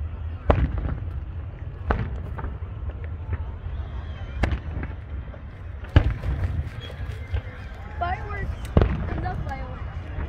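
Fireworks show: aerial shells bursting with sharp bangs every second or two, about five in all, over a low rumble.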